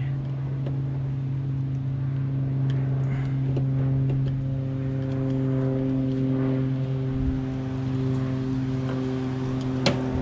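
A steady low mechanical hum with overtones, with a few faint clicks as a rubber car-door belt weatherstrip is pried off its clips with a metal pick, and one sharp click just before the end as it comes out.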